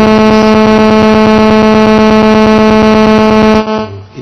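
Loud steady electronic buzz at a single pitch with many overtones, cutting off suddenly near the end, interrupting the speech: an audio fault in the microphone or recording chain.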